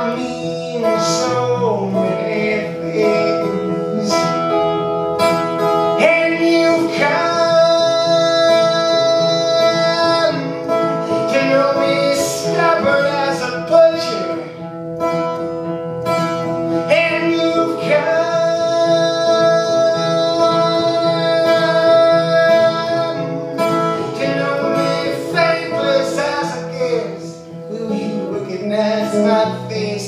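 Acoustic guitar strummed steadily through an instrumental break in a live solo folk song, after the last sung word is held at the start.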